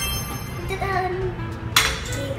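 Background music playing, with one sharp metallic clink near the end as the metal cookie cutters knock together.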